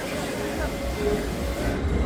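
Roller coaster train rumbling along its steel track, the rumble growing about half a second in and running on, over a murmur of people's voices.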